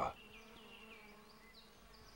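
A bumblebee buzzing: a faint, steady hum.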